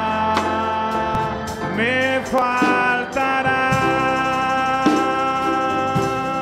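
Live worship music: a singer holding long notes over guitar and drums, with the voice sliding up into a new note about two seconds in.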